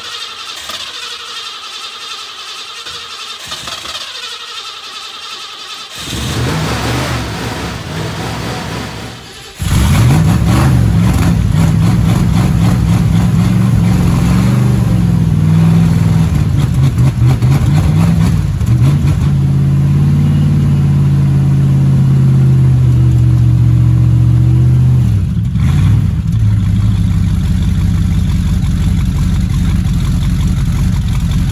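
1968 Ford Mustang Sprint Coupe cold-started on a jump pack: the starter cranks, and the engine catches about nine and a half seconds in. It then runs loudly with the revs rising and falling, and drops back to a steadier idle about twenty-five seconds in.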